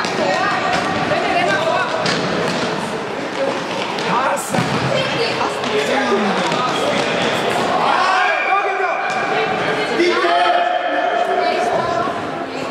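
Shouting voices echoing in a large sports hall during a futsal game, with the thuds of the ball being kicked and bouncing on the hall floor, one sharper knock a little before the middle.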